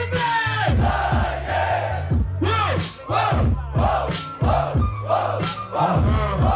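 Hip-hop beat with a steady bass line and drum hits about twice a second, with a repeating vocal-like melodic figure, over crowd noise.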